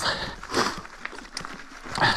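Mountain bike tyres rolling slowly over a leaf-covered dirt trail, with a few light clicks and knocks from the bike. A soft breath from the rider comes about half a second in.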